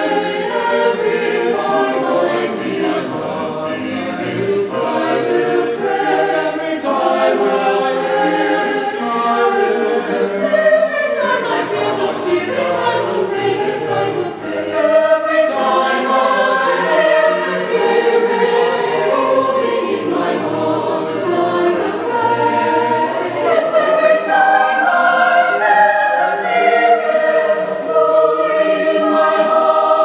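Mixed choir of male and female voices singing in parts, with a brief drop in loudness about halfway through before the singing swells louder again.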